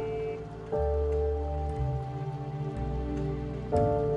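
Soundtrack music: sustained chords over low bass notes, with a new chord coming in about a second in and another near the end.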